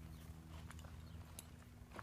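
Near silence: a faint steady low hum with a few soft clicks.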